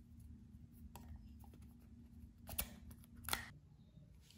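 Light plastic clicks and handling noises from a GoPro action camera and its battery being handled, with two sharper clicks about two and a half and three and a quarter seconds in. A low steady hum runs underneath.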